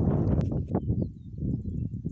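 Wind buffeting the microphone, easing off about a second in, with a sharp click near the start and a run of footsteps as the camera is walked forward.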